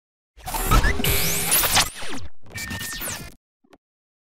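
Logo intro sting: whooshes with rising and falling pitch sweeps and sudden hits, broken into a few abrupt sections, stopping about three and a half seconds in.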